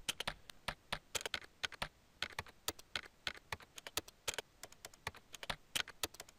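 Keyboard keystroke sounds simulated by the TypYo auto-typing software as it types text on its own: sharp clicks, several a second, in an uneven, human-like rhythm.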